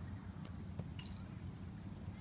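Steady low outdoor rumble with a few faint clicks of the handheld phone being handled.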